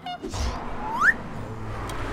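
A short whistle-like tone that glides upward about a second in, followed by steady outdoor background noise with a low hum.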